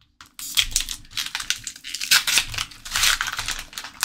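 Crinkling and rustling of a foil Pokémon booster-pack wrapper and the cards inside being handled, a quick run of crackles starting about half a second in.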